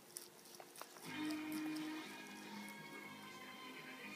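Television soundtrack music playing in the background, held tones swelling about a second in. A few faint crunching clicks of a rabbit chewing parsley come in the first second.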